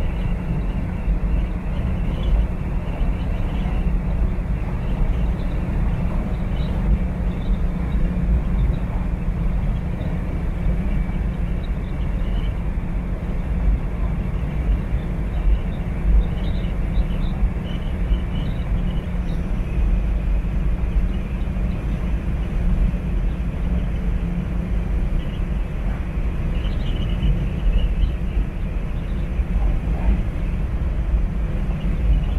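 Car driving at highway speed, heard from inside the cabin: a steady low rumble of engine, tyres and wind.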